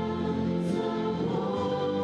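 A group of young women singing a Christian song together into microphones, a steady sustained vocal line.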